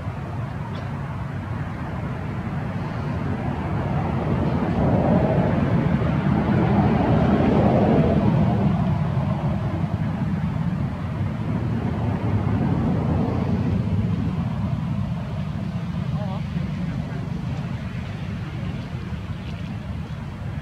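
Low rumbling outdoor noise that swells from about four seconds in, is loudest around seven to eight seconds, then eases off, with indistinct voices under it.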